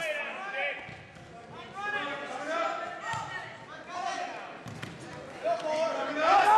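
Indistinct shouted voices echoing in a large gymnasium, with a few dull thuds scattered through.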